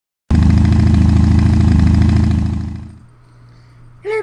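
Motorcycle engine running loudly with a fast, even pulse of firing strokes, cutting in abruptly just after the start and fading out over the second half.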